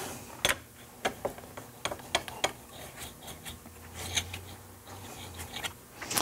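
Steel card scraper being worked on a sharpening stone against a magnetic guide block: a run of light, irregular clicks and scrapes of steel on stone.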